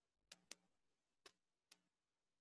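Near silence, broken by four faint, short ticks spread unevenly through the pause.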